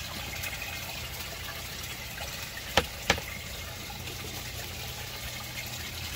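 Water running and trickling steadily through an aquaponics radial flow settling tank, with two short clicks about a third of a second apart near the middle.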